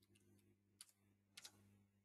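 Near silence over a faint low hum, broken by a few faint clicks at a computer: one about a second in and a quick pair about a second and a half in.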